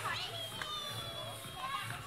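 Children playing and calling out, with adults talking among them.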